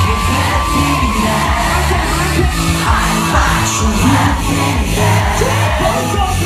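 Loud live pop music with a stepping bass line, played through a club PA, with a crowd cheering over it.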